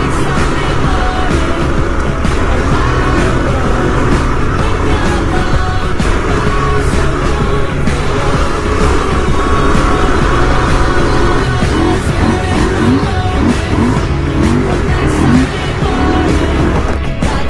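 Background music over a dual-sport motorcycle's engine running steadily as it rides a dirt trail.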